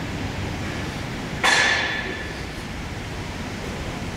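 A single sharp metallic clank about one and a half seconds in, ringing briefly before fading, over steady room noise.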